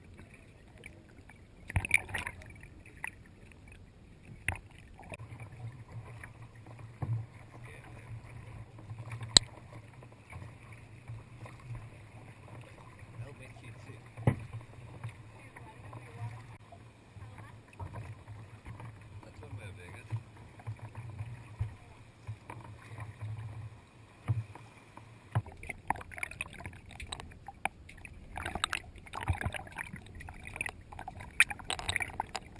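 Water sloshing and splashing around a kayak's bow-mounted action camera as it plunges under the surface among kelp and comes back up. Occasional sharp knocks sound through it, a low steady rumble runs through the middle stretch, and heavier splashing comes near the end.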